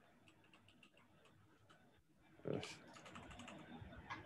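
Faint, quick keystrokes on a computer keyboard as a command is typed, with a short pause about halfway through.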